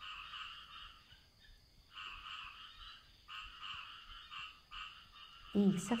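Chorus of frogs croaking, pulsed calls that come and go in rounds of about half a second to a second with short gaps between.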